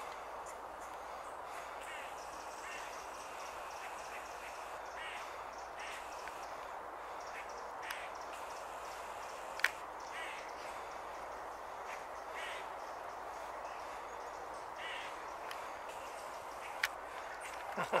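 Short bird calls every one to three seconds over a steady outdoor background rush, with a sharp click about ten seconds in and another near the end.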